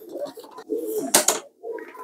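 Pigeons cooing in wooden loft cages, with one sharp knock a little over a second in.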